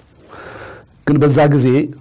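A man speaking: an audible breath drawn in shortly after the start, then about a second of speech in the second half.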